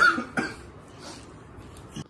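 Two short cough-like vocal sounds from a person, about half a second apart, the first one the loudest, then quiet room background.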